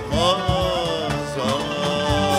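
Male voice singing a Turkish Sufi (tasavvuf) song in long, wavering, ornamented lines, opening a new phrase just after the start, accompanied by oud and a regular low beat.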